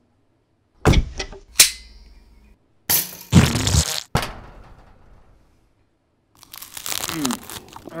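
Sound effects of a toaster contraption firing toast at a breakfast table. A knock comes about a second in, then a sharp click with a brief ringing, then a louder clattering burst about three seconds in. A rushing noise fills the last second and a half.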